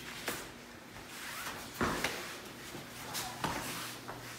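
Sharp slaps of forearms and uniform sleeves meeting as training partners punch and block, three distinct hits about a second and a half apart.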